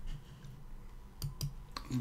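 A few sharp clicks from computer input while working in a code editor: two in quick succession about a second and a quarter in, and one more near the end.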